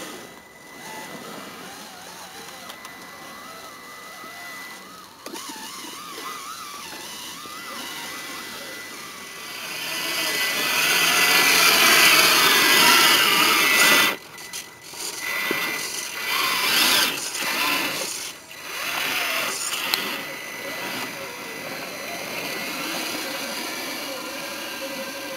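Electric motor and gearbox whine of a 1/6-scale RC Jeep Wrangler driving over forest ground. It swells to its loudest as the model passes close, cuts off abruptly a little past halfway, then comes back in short on-and-off spurts of throttle.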